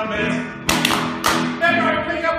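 Live keyboard music playing chords, cut by two sharp percussive hits about half a second apart a little past the middle.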